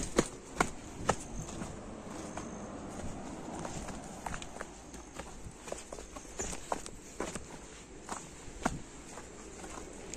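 Footsteps of shoes on a hard dirt and stone path: an uneven run of sharp steps over a faint steady hiss.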